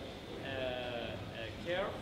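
A person's voice drawing out hesitant "uh" sounds between words, the pitch sliding near the end.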